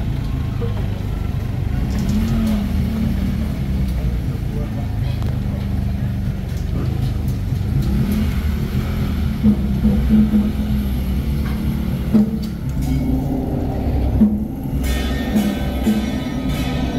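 Street sound dominated by a low rumble and a vehicle engine running, with people's voices. Music comes in near the end.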